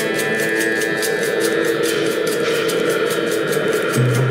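Background music with a steady beat of about four ticks a second over held tones.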